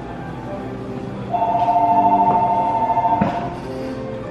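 Background music playing, with a loud held two-note electronic tone coming in about a second in and lasting about two seconds before fading.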